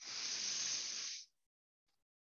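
A woman's deep, audible breath in, a steady rush of air lasting just over a second that stops abruptly.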